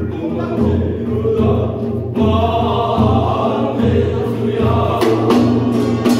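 Korean binari blessing chant: a sung voice over a steady beat of handheld drums. The singing comes in loudly about two seconds in, and sharp strikes ring out near the end.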